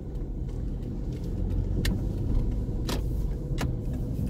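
Steady low rumble of a car heard from inside the cabin, with a few sharp clicks about two, three and three and a half seconds in.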